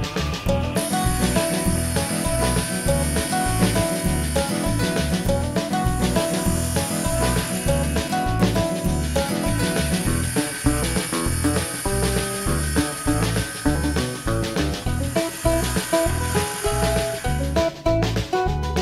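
Background music with a steady beat, over a benchtop table saw running and cutting a wooden board; the saw starts about a second in and stops just before the end.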